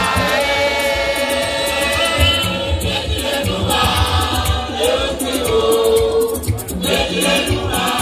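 Ewe borborbor music: a group of voices singing together over a steady low drum beat and a fast rattle.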